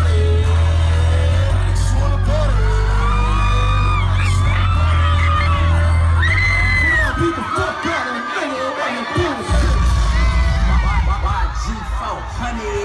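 Hip-hop track with heavy bass played loud through a concert PA, with the crowd shouting and singing along. The bass drops out about seven seconds in and comes back briefly near ten seconds, while the crowd voices carry on.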